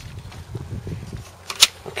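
A printed paper target sheet being handled, with one short, sharp crackle about one and a half seconds in over a low rumble.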